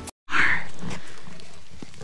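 A sudden loud sound effect, edited in at a cut and fading away steadily over about a second and a half.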